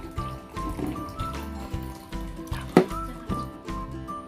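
Background music with a melody over a steady low beat, with warm water faintly pouring from a thermos flask into a drinking glass. A single sharp click sounds near three seconds in.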